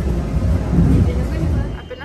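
Low rumble of a moving train, with indistinct voices over it; it cuts off suddenly near the end.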